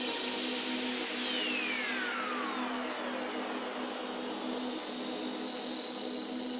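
A swooshing downward noise sweep from the video's electronic background music, falling in pitch over about three seconds over a held low tone and slowly fading.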